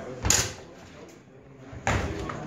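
Steel training longswords clashing twice, sharp strikes about a second and a half apart, the first the louder, during a fencing exchange.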